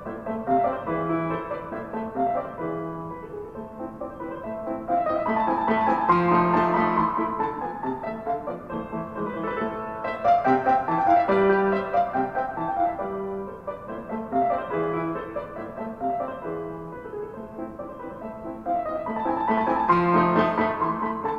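Slow, classical-style piano music, swelling louder and easing off again in waves.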